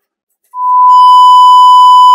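Television test-card tone: a loud, steady 1 kHz beep of the kind played with colour bars, starting about half a second in.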